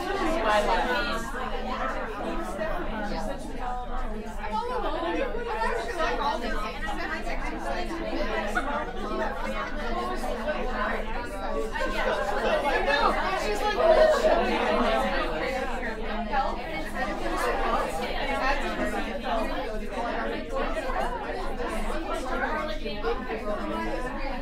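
Many women talking at once in small groups, overlapping conversations merging into a steady chatter in a large room.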